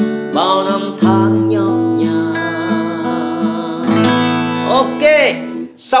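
Steel-string acoustic guitar playing a picked pattern on a D chord, bass note first, with fresh chords about a second in and about four seconds in that ring on. A man sings the song's closing phrase over it near the start and again near the end.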